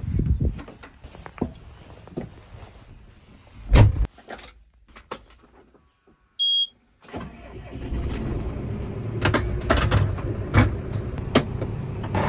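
Tractor cab door shut with a thump about four seconds in, then a short electronic beep as the ignition key is turned. The tractor's diesel engine then starts and runs, with rattles and knocks from the cab.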